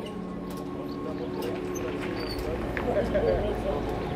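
Indistinct voices in the distance over a steady low hum.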